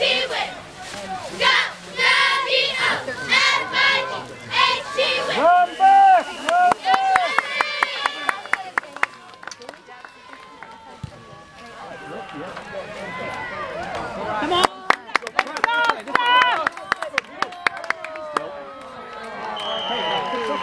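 Sideline spectators and cheerleaders shouting and cheering during a kickoff return, with scattered hand claps. It dies down about ten seconds in, then the shouting and clapping rise again.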